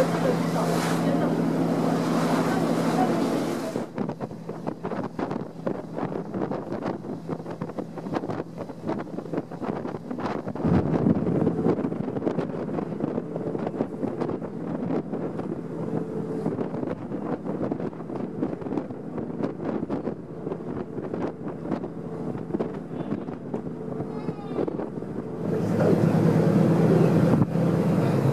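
Passenger ferry under way: steady engine drone with wind buffeting the microphone. The sound drops about four seconds in and rises again near the end.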